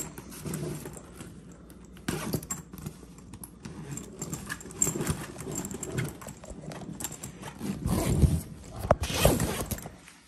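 Hands handling a nylon roller bag: fabric rustling and the metal zipper pulls clicking and jingling as a pocket zipper is worked. There are louder knocks and bumps about eight to nine and a half seconds in.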